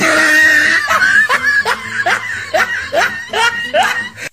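Loud laughter, a run of short 'ha' syllables that each rise in pitch, about three a second, after a rougher, noisier burst in the first second.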